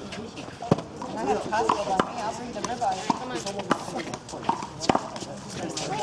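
Men's voices talking on the court, broken by about five sharp smacks spread across the few seconds, the sound of a small rubber handball striking the hand, wall or court.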